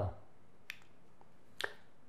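A quiet pause with two faint, short clicks about a second apart.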